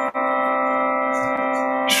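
Harmonium holding a steady sustained chord, with a brief break just after the start.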